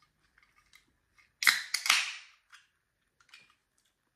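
Ring-pull of an aluminium iced-tea can being opened: a sharp crack about a second and a half in, a second snap right after, then a short hiss of escaping gas that fades within half a second.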